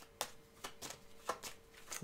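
Faint clicks and snaps of tarot cards being handled, about five in two seconds, over a faint steady hum.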